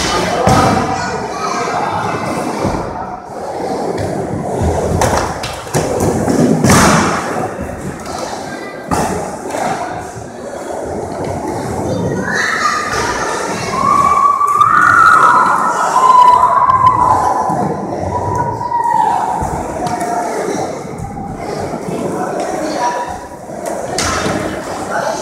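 A skateboard rolling on a wooden ramp: a continuous rumble of the wheels, broken by thuds from the board. The loudest thud comes about six to seven seconds in.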